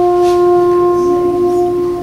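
Concert band holding one long, loud sustained note, released near the end.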